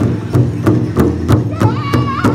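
Powwow drum group striking a large hide-topped drum in unison with padded sticks, steady beats about three a second. About one and a half seconds in, a high, wavering lead voice begins singing over the beat.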